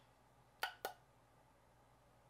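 Two quick clicks about a quarter second apart, from handling a powder blush compact and makeup brush, then near-silent room tone.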